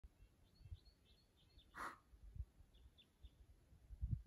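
Near silence outdoors, with a small bird chirping faintly in short, high notes in scattered runs. A brief rustle cuts in a little under two seconds in.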